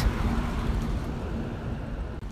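A steady rushing noise, a background ambience bed, slowly fading out.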